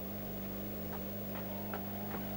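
Steady low electrical hum on an old film soundtrack, with a few faint, irregular clicks about half a second apart.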